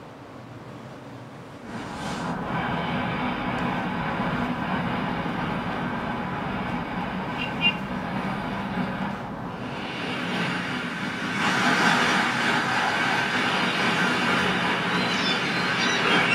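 Steady city traffic noise, with buses and cars passing on a busy road. It starts about two seconds in and grows louder and brighter about eleven seconds in.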